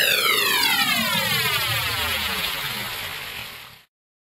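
Electronic pitch-down sweep ending a trance music mix. A cluster of tones glides steadily downward together, fading, then cuts off suddenly just before the end.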